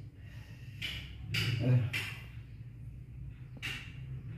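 Four short, sharp breaths and a brief grunt ("eh") from a man sitting in an ice bath, the breathing of someone enduring the cold water, over a steady low hum.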